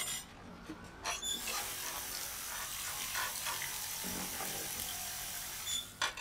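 Kitchen tap running into a sink for about four and a half seconds, starting about a second in and cut off abruptly near the end, with a few sharp dish clinks around it as dishes are washed.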